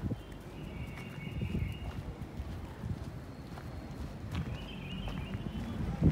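Footsteps on dirt ground: irregular soft thuds of a person walking. A faint high-pitched sound comes in twice.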